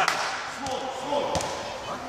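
Basketballs bouncing on an indoor court floor, a few single bounces about two-thirds of a second apart, under the voices of players in the hall.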